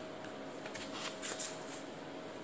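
Faint crinkling and light clicks of a clear plastic crayon case being handled, over a steady faint hum.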